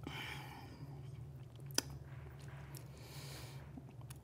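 Faint chewing of a mouthful of chunky dandelion-leaf soup, with one sharp click a little under two seconds in, over a low steady hum.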